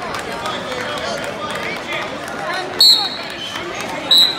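Spectators in a gym shouting and calling out to the wrestlers, with one short, shrill whistle blast about three seconds in, the loudest sound here.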